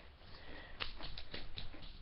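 A Doritos tortilla chip being chewed: a run of small, irregular crunches that starts about half a second in.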